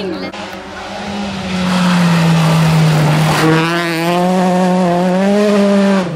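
Rally car engine working hard as the car approaches on a loose gravel stage; its note sags about two seconds in and then climbs again under power. A hiss of tyres and gravel spray comes with it.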